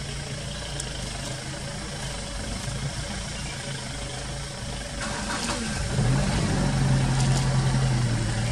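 A vehicle engine idling with a steady low hum that grows louder about six seconds in.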